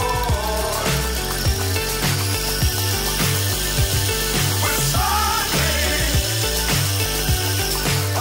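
A pop song with a steady beat, over which a small brushless motor spinning a plastic reduction gearbox makes a thin steady high whine. The whine comes in about a second and a half in and fades near the end.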